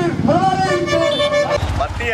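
A man shouting a protest slogan into a hand microphone, the voice bending in pitch and then held, with a low traffic rumble coming up near the end.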